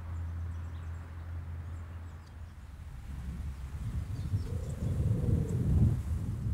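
Low outdoor rumble that builds over the last few seconds, with a faint hum rising and falling in pitch near the end.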